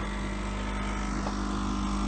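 Nescafé Dolce Gusto capsule coffee machine's pump running with a steady hum as it brews coffee into a mug.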